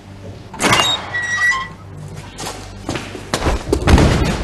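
Heavy riveted steel cell door being unlatched and opened: a loud metallic clank about half a second in with a brief high squeal after it, then more knocks and a heavy thud near the end.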